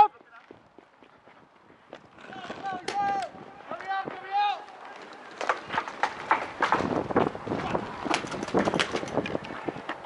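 Distant shouting, then from about halfway a rapid, irregular string of sharp pops from paintball markers firing, mixed with scuffling movement on dirt.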